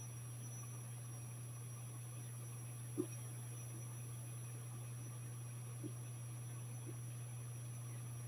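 Quiet room tone: a steady low electrical hum and a faint high whine. There is a soft tap about three seconds in and two fainter ones near six and seven seconds.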